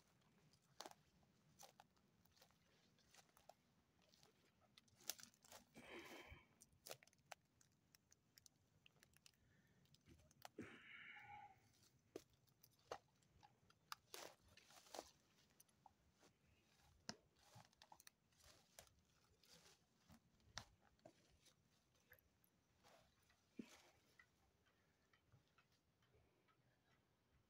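Near silence broken by faint, irregular crunches and clicks of footsteps through grass and debris.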